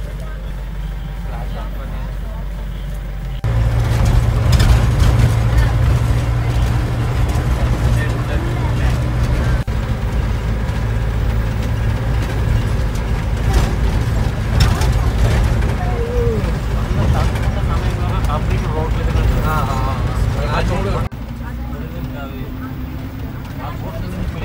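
Safari vehicle's engine running with a steady low rumble as it drives along a forest track at night. The rumble steps up louder about three and a half seconds in and drops back near the end.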